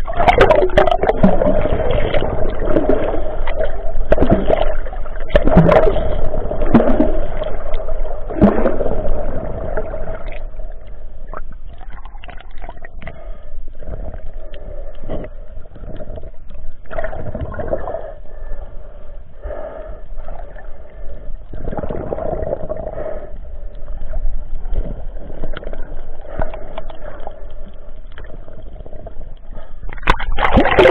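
Muffled underwater water noise picked up through a submerged action-camera housing: rushing and sloshing that comes in surges about every second and a half, strong for the first ten seconds and weaker after, over a steady low hum.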